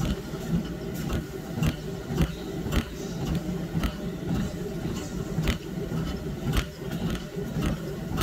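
Footsteps at a steady walking pace, about two a second, over a steady low mechanical hum.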